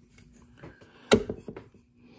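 One sharp click about a second in, followed by a few faint ticks: metal needle-nose pliers handling the parts of a desoldered amplifier circuit board.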